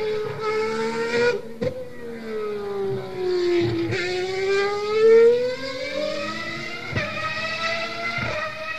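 A car engine, its pitch falling steadily for about four seconds as it slows and then rising again as it speeds up.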